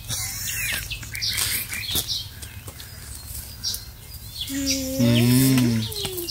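Small birds chirping in the background. Near the end comes a louder, low-pitched voice-like call lasting about a second and a half.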